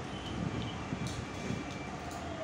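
A steady rumbling background noise, with a few faint short clicks and low grainy sounds of eating rice by hand from a steel plate.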